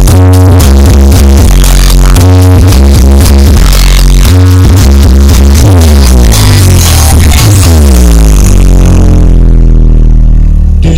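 Very loud electronic dance music with a heavy, pounding bass beat, played through a large outdoor sound system. Falling pitch sweeps run through the second half, and the high end drops away near the end.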